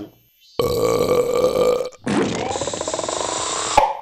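Cartoon sound effect of a long, loud, gassy burp blown through a straw, in two stretches. The second stretch buzzes and rises slightly in pitch.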